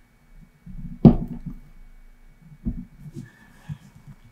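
Hands pushing a jumper wire into a solderless breadboard on a table: a sharp knock about a second in, a duller one a little before three seconds, and soft rustling and tapping between them.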